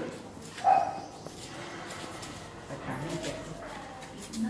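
A dog barks once, a short loud bark a little under a second in, followed by faint voices.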